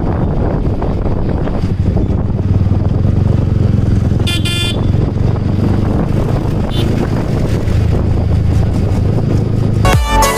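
Motorcycle engine running at a steady road speed with wind rushing over the microphone, in traffic. A short vehicle horn toot sounds about four seconds in.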